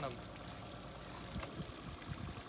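Low, steady wash of river water and wind around a small boat, with a few soft low thumps about a second and a half in.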